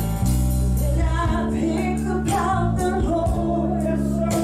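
Live gospel worship music: a woman sings over keyboard, bass and a drum kit, with a steady beat of cymbal hits.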